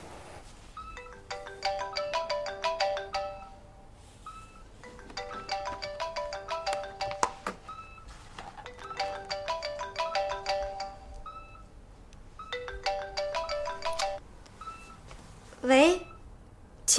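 A mobile phone ringing with a melodic ringtone: the same short tune of quick notes plays four times, with brief pauses between.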